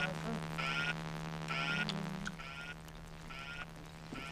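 Electronic alarm: short warbling beeps repeating about six times over a steady electronic hum.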